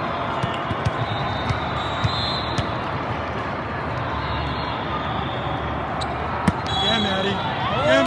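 Busy multi-court volleyball hall: a steady crowd hubbub with frequent sharp thuds of volleyballs being hit and bouncing, one louder hit about six and a half seconds in, then players shouting near the end.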